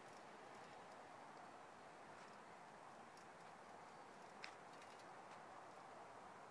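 Near silence: faint outdoor background hiss, with one brief faint high tick about four and a half seconds in.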